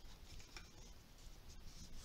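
Faint rustling of cardstock being handled and pressed flat by hand.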